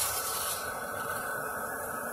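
Venturi pool jet just opened and running: a steady rushing hiss of water and drawn-in air pushing a plume of bubbles into the pool.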